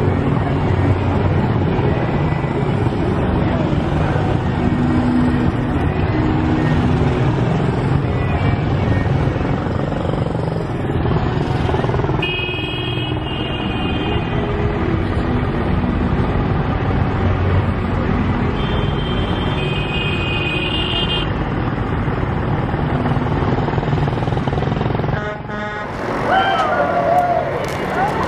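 Engines of a group of small parade motorcycles running steadily as the riders pass, with a high horn sounding twice for about two seconds each midway. Near the end voices are heard.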